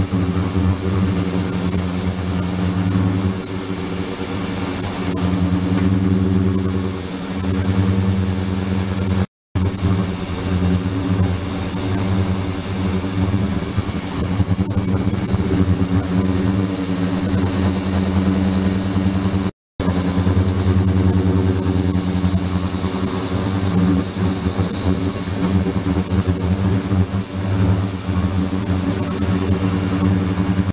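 Ultrasonic cleaning tank running with its microbubble-generating liquid circulation system: a steady hum made of several fixed low tones, with a high hiss over it. The sound drops out twice for an instant, about a third and two thirds of the way through.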